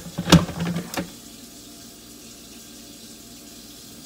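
Thick blended smoothie poured from a blender jar into a glass: a few glugs and clinks in the first second, then only a steady faint hiss.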